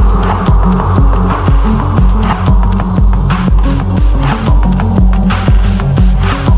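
Psychill electronic music at 120 BPM: a deep bass pulses on every beat, about two a second, under clicky percussion and a sustained synth tone.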